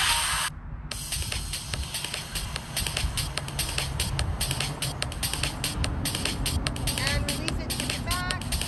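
Workout music cuts off suddenly about half a second in. It gives way to a low rumble with many small clicks and rustles, and a few short pitched chirps near the end.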